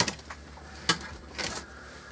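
Cables and connectors being handled inside a small metal PC case: light rustling with a few sharp clicks, the loudest about a second in.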